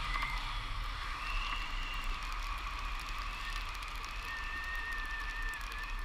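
Airflow buffeting the action camera's microphone in paraglider flight: a steady low rumble of wind noise, with faint thin whistling tones that drift slightly in pitch.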